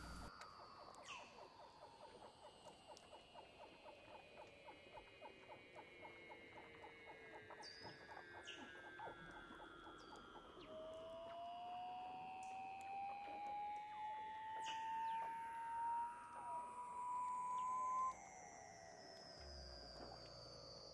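Faint seal calls: many slow, overlapping falling glides and trills, with scattered clicks. A clear rising whistle runs through the second half.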